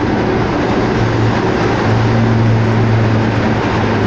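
Steady engine drone and road noise from inside a moving truck's cab as it drives through a road tunnel, with a low hum that grows stronger about two seconds in.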